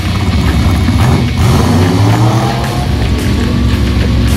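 Vintage drag cars' engines running loud at the starting line, with the engine pitch rising from about a second in as one revs up and pulls away.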